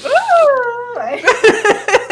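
Women laughing: a high, squealing laugh that slides down in pitch for about a second, then quick broken bursts of laughter.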